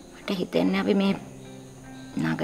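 A voice speaks a short phrase in the first half, over soft background music of sustained notes that carries on alone afterwards.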